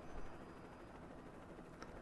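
Faint room tone and microphone hiss, with a small soft noise just after the start and a tiny click near the end.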